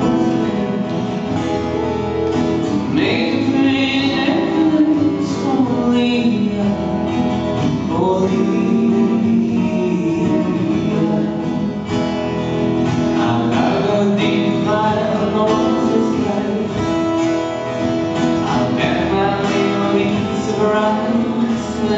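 Live song performance: a man singing over two acoustic guitars playing together.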